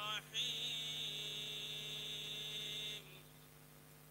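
A man's chanted religious invocation through a public-address system: one long held note that stops about three seconds in. A steady electrical hum from the sound system remains afterwards.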